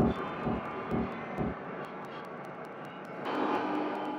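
Electroacoustic music made from frog recordings reworked in Kyma. Three low pulses about half a second apart lead into a faint sustained texture with scattered clicks, which swells again near the end.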